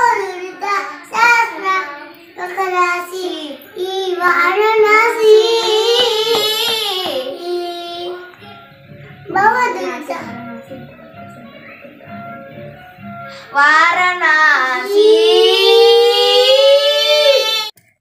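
A child singing in a high voice, a melody of long drawn-out notes, with quieter stretches in the middle and an abrupt cut-off just before the end.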